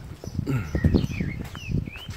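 Footsteps on a paved sidewalk, with a few short, high bird chirps in the background.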